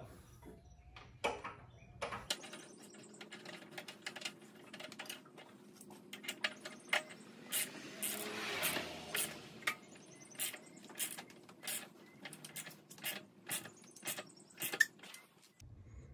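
Faint, irregular metallic clicks and knocks as a T-handle socket wrench is worked to tighten a magnesium anode rod into the top of a water heater, with a short rustle about halfway.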